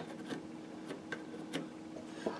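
A few faint ticks of a small hand tool against a brass patch box cover being set into a wooden rifle stock, spread unevenly through the moment over a faint steady hum.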